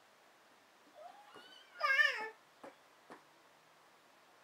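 A baby of about six months gives a short, high, wavering squeal about two seconds in that drops in pitch at the end, after a briefer rising sound a second earlier. Two faint clicks follow.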